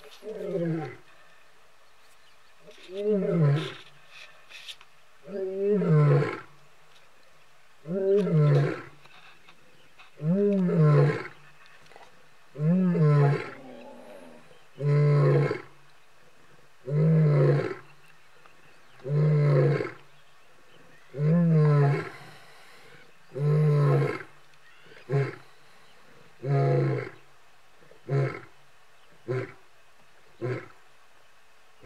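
Male lion roaring: a bout of about fifteen deep calls roughly two seconds apart. The first calls are long and fall in pitch, and near the end they turn into shorter, quicker grunts.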